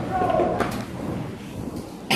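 Several people's voices talking in a room, fading to a quieter stretch after about a second, with one light click partway through.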